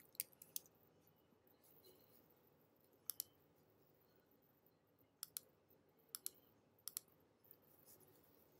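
Scattered sharp clicks of computer input, about ten in all, some single and some in quick pairs, over near silence.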